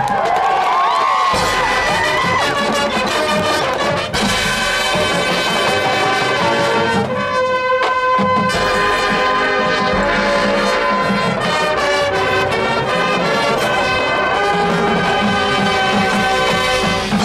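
High school marching band playing: brass chords over percussion, with a sharp accent about four seconds in and a long held brass chord around the middle.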